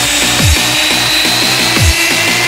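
UK hardcore dance music: fast repeated bass notes, deep booms that drop in pitch about every second and a half, and a long high synth note held above.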